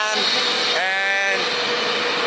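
A person's drawn-out, non-word vocal sound lasting about half a second, about a second in, over steady background noise and a faint constant hum.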